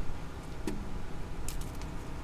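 Steady low background rumble, with a brief hum of a voice about a third of the way in and a few faint clicks near the end.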